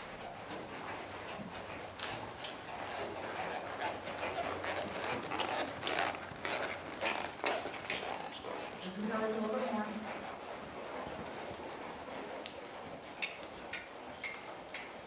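Horse's hooves striking the arena footing in an irregular run of dull beats, loudest in the middle, with one short pitched animal call about nine seconds in.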